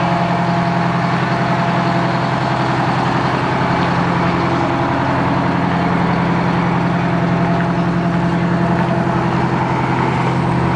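Heavy fire rescue truck's engine idling steadily, heard up close beside the truck.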